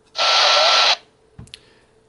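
Icom IC-A20 airband transceiver's speaker giving a loud burst of static hiss lasting under a second, as the memory scan lands on an active channel. A faint click follows about a second later.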